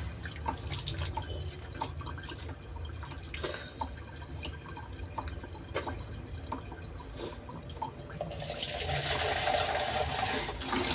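Water dripping in scattered drops over a steady low hum; from about eight seconds in, a heavier run of water or splashing builds up.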